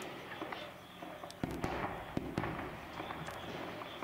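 Gunfire: a scatter of sharp shots, with a cluster of louder ones about one and a half to two and a half seconds in.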